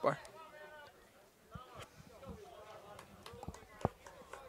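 Faint, distant shouting voices of players and sideline people on a lacrosse field, with a few short sharp knocks. A single louder thump near the end is the loudest sound.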